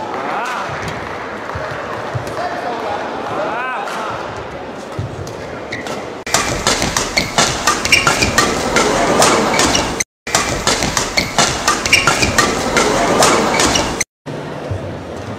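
Badminton doubles rally in an indoor hall: shuttlecock hits and short shoe squeaks on the court over a crowd murmur. About six seconds in the sound jumps suddenly to a much louder, dense run of sharp hits and clicks, cut by a brief dropout of silence near ten seconds.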